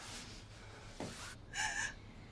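A woman's short, high gasp near the end, over quiet room tone, with a faint breath about a second in.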